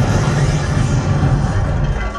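Cartoon rocket blast-off sound effect: a sudden loud low rumble with a rushing hiss, over the cartoon's music, played through theatre speakers. It dies down near the end.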